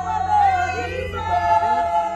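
A group of people singing together, several voices at once, in a crowd's praise song.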